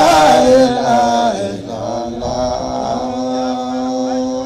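Men's voices singing a melodic Islamic devotional chant through a microphone. The line glides and bends in pitch, loud at first and softer after about a second, then settles on a held low note near the end.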